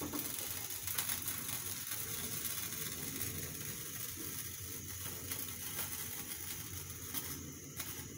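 Steady hiss of a lit gas stove burner heating a frying pan.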